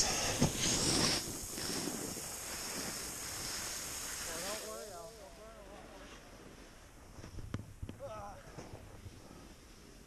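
Snowboard sliding and scraping over packed snow, a steady hiss that fades out about five seconds in as the rider slows to a stop. Brief voices follow.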